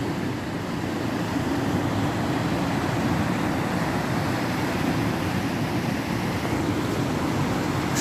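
Heavy water flow rushing through and over the weir of a canal diversion dam: a steady, unbroken rushing noise.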